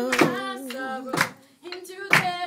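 A voice singing held, wavering notes, fading out about halfway through, over hand claps on a steady beat about once a second.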